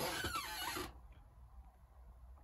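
A person sipping hot tea from a mug: one short slurp lasting under a second, then quiet.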